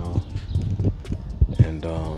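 Indistinct voice with several sharp knocks or taps spread through the middle.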